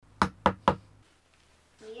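Three quick knocks on a door, about a quarter second apart, with a voice answering near the end.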